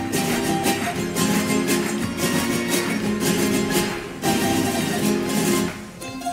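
A carnival coro's plucked-string ensemble of Spanish guitars and long-necked lutes playing together: the instrumental opening of a Cádiz carnival tango. There is a brief dip in the playing about four seconds in.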